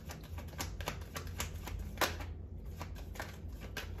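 A deck of tarot cards being shuffled by hand: a quick, irregular run of light card-on-card clicks, with the loudest snap about halfway through followed by a brief pause before the clicking resumes.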